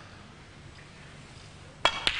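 Quiet hall hush, then near the end one sharp click of a snooker cue tip striking the cue ball.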